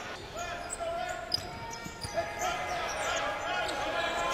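Court sound of a basketball game in play: a ball dribbling on the hardwood floor, short squeaks of sneakers and scattered voices echoing in the arena.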